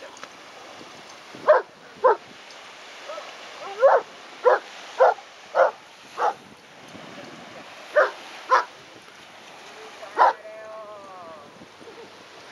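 A dog barking in a series of about ten short, sharp barks, often in quick pairs, during rough play; just after the last bark comes a brief drawn-out falling whine.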